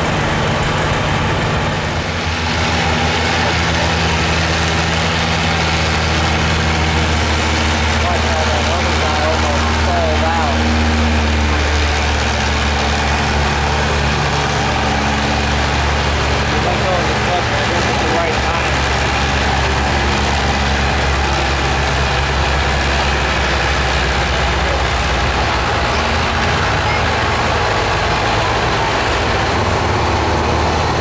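Farm tractor's diesel engine running hard under load as it pulls a weight-transfer sled, loud and steady, its pitch shifting now and then.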